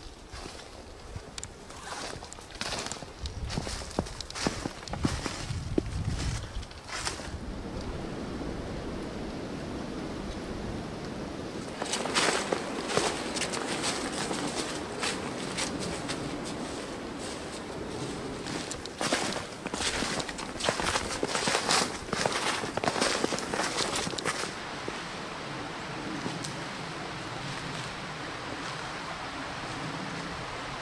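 Footsteps crunching through fresh snow on the forest floor, irregular steps in two spells, the second busier. Near the end a steady rushing of a flowing creek takes over.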